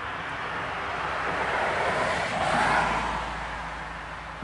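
A steady rushing noise with a low rumble that swells to a peak a little past halfway and then fades.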